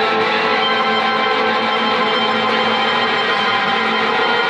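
Two amplified electric guitars played together in a sustained, droning psychedelic wash: many overlapping held tones at a steady, even loudness, with no clear breaks or strums.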